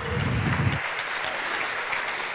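Audience applauding, with a low rumble during the first second.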